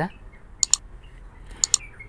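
Computer mouse clicking: two quick double-clicks about a second apart.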